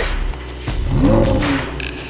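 A sports car engine rumbling at idle, then revved once about a second in, its pitch rising and falling back.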